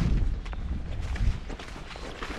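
Wind buffeting the microphone, a low rumble that eases off about a second and a half in, with one click at the start.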